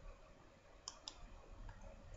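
Near silence, with two faint sharp clicks close together about a second in.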